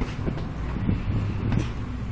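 Gloved punches landing on a heavy punching bag, a few dull thuds, over a steady low rumble.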